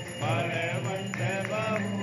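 Music with chanted singing over a low steady drone, with a few short, sharp strikes about halfway through.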